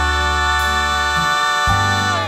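Background song: one long held note with a full set of overtones, over a bass line that moves to a new note near the end.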